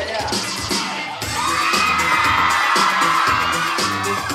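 Upbeat dance music with a steady beat. About a second in, an audience breaks into high-pitched shouting and whooping that carries on over the music.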